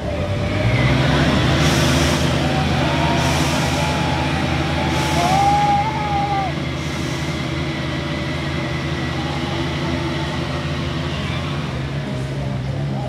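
Several Bajaj Pulsar single-cylinder motorcycle engines held at steady high revs while the bikes do a group burnout, spinning their rear tyres. A wavering high tone sounds over them in the middle.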